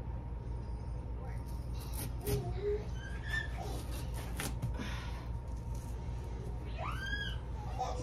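A serrated knife sawing at a large raw potato on a countertop, with a few faint scrapes and knocks over a steady low hum. Near the end a voice gives a short rising-and-falling whine.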